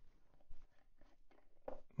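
Plastic screw cap being twisted off a glass ink bottle: a few faint clicks and scrapes from the threads, about half a second in and again near the end.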